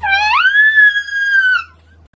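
A high, childlike voice holding one long vocal note without words. It glides up about a third of a second in, holds steady, then sinks slightly and stops shortly before two seconds.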